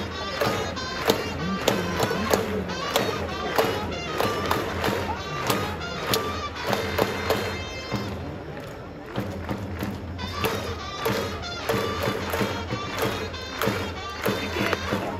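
Japanese pro-baseball cheering section in full cry for the batter: a rhythmic fight song with a steady beat, crowd chanting and clapping in time. It eases off for a couple of seconds about eight seconds in, then picks up again.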